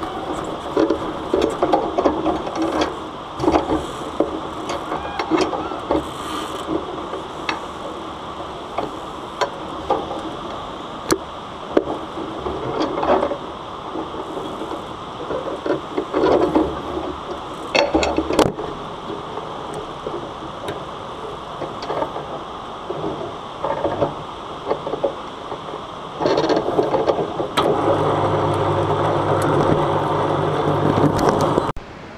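Steady rush of wind and white-water river below a bungee jump platform, broken by irregular knocks and rattles from the bungee rig. About four seconds before the end a steady motor hum starts, as the jumper is hauled back up to the platform.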